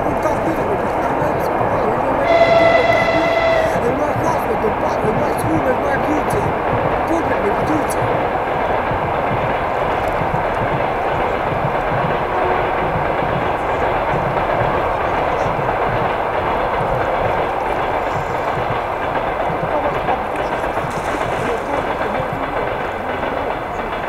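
A single horn blast, one steady pitch about a second and a half long, sounds a little over two seconds in, the loudest moment, over a steady rushing, rumbling noise that carries on throughout.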